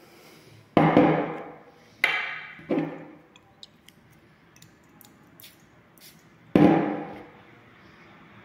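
A glass perfume bottle and its plastic cap being handled and set down on a wooden desk: four loud knocks, two close together near the start and one more near the end, each with a short ring, with a few light clicks between them.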